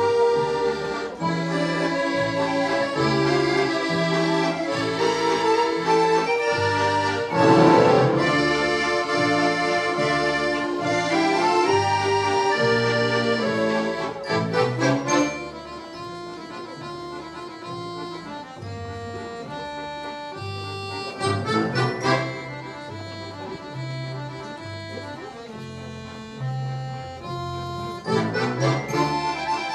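Children's accordion ensemble playing a piece, melody and chords over bass notes on a steady beat. The music is loud for the first half, then drops to a quieter passage about halfway through, with a brief loud swell near the two-thirds point.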